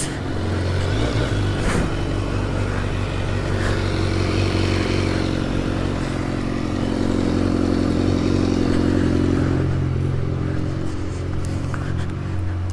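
BMW S1000R's inline-four engine running steadily at idle.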